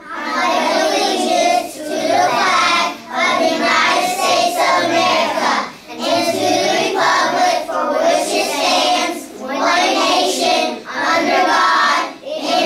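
A class of young children reciting the Pledge of Allegiance in unison, in phrases with short pauses between them.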